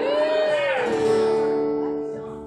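Live acoustic music: a sustained note bends up and back down, then holds steady over a ringing acoustic guitar chord.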